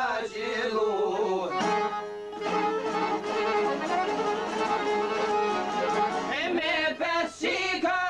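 Albanian folk song: a sung line with a wavering, ornamented melody trails off about a second and a half in, the instruments carry the tune alone for a few seconds, and the singing comes back in near the end.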